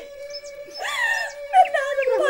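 A woman wailing in drawn-out, wavering cries, a stylised stage weeping, over one steady held note of the accompaniment; the loudest cry comes about a second in.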